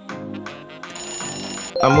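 Background music with a steady beat. About a second in, a bright electronic ringing sound effect like a phone bell rings for under a second, marking the countdown timer running out; near the end a sweeping reveal effect starts as a voice begins to speak.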